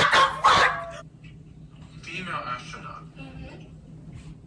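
A loud, sharp dog-like yelp in the first second, then a quieter wavering whine about two seconds in, from something the man on the bed cannot place.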